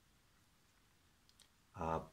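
Near silence with room tone, broken by two faint, quick clicks about a second and a half in. A man's voice starts with 'uh' near the end.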